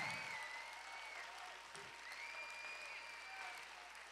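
Congregation clapping, fading away as the applause dies down.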